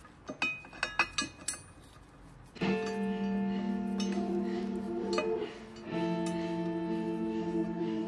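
A few light metallic clinks as steel flywheel bolts are set into the flywheel by hand, followed from about two and a half seconds in by background music with sustained held notes.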